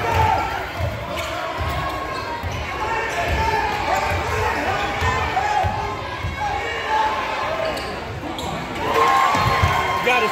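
Basketball dribbled on a hardwood gym floor: a steady run of bounces, about one or two a second, over the chatter of spectators' voices.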